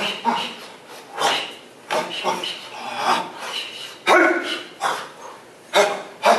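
Karate students' short, sharp shouts, about one a second, each timed to a technique as the class moves through a form.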